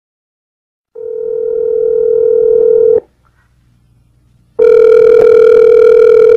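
A telephone ringing: two long, steady electronic rings of about two seconds each, with a short pause between them.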